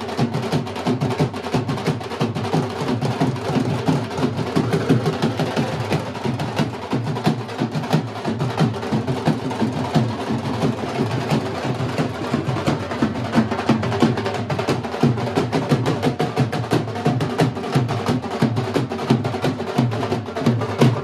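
Several dhols, double-headed barrel drums beaten with sticks, playing together in a rapid, unbroken rhythm.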